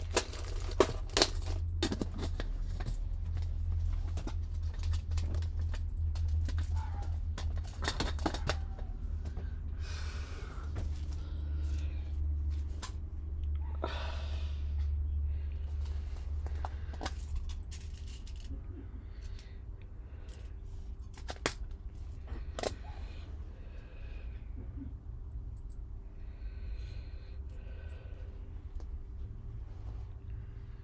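Hands handling small craft supplies at a table: scattered sharp clicks and rustling, with a cluster of clicks at the start and rustling in the middle, over a low steady hum.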